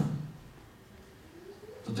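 A pause in a man's sermon in a hall: his voice trails off, then a quiet room with a faint rising tone just before he starts speaking again near the end.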